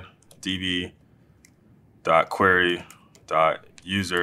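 A man speaking in short phrases, with a few light keystrokes on a laptop keyboard between his words.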